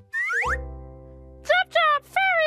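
A cartoon-style sound-effect sting as a puppet pops out of a hatch. It opens with a quick rising whistle-like glide, then a low held note that slowly fades. Near the end come two short high-pitched chirps that bend in pitch.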